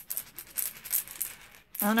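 Glass beads rattling inside a polymer-clay-covered egg as it is shaken by hand: a quick run of small clicks for about a second and a half, stopping just before speech resumes.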